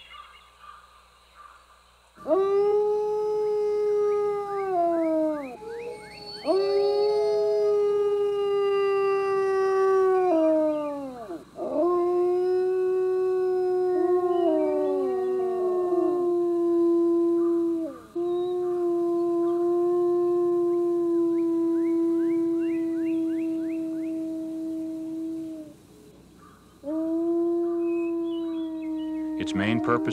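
Wolves howling: long calls held at a steady pitch, each falling away at its end, one after another, with other voices crossing and overlapping in places. The howling that gathers a scattered pack for the hunt.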